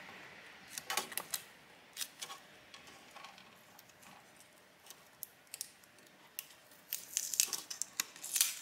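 Faint scattered clicks and crinkles of small-parts handling: fingers and tweezers working a laptop display cable connector and its tape. The clicks come more often near the end.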